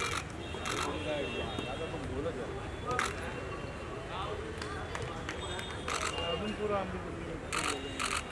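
Voices of children and people around chattering, with camera shutters clicking several times, singly and in quick pairs.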